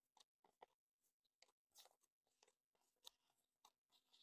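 Near silence with faint, scattered crinkles of Canadian polymer banknotes being counted through by hand.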